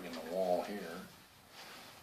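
A person's wordless hum, under a second long and wavering in pitch, with a short click just at the start.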